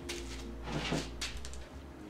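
Handling noise on a workbench: a few light knocks and rustles as tools and metal parts are picked up and moved, over a low rumble.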